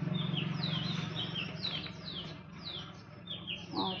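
Small birds chirping over and over, short high notes that slide downward, about three a second, over a low steady hum that fades away about halfway through.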